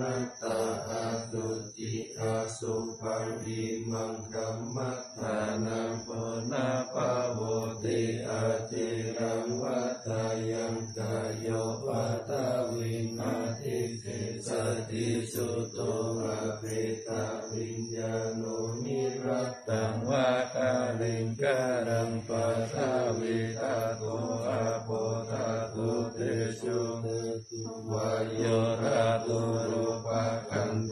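Thai Buddhist morning chanting (tham wat chao) in Pali: continuous recitation held on a near-level pitch, with brief breaks for breath.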